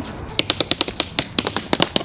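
Tap shoes striking a wooden dance board laid on pavement: a quick, irregular run of sharp taps, about eight a second, starting about half a second in.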